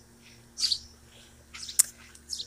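Small birds chirping briefly: a short high call about half a second in and fainter ones after, over a faint steady hum. A sharp click comes near the end.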